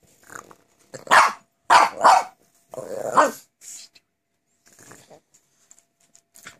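Pekingese dogs growling and barking at each other in play: three loud bursts in the first half, then a few quieter ones.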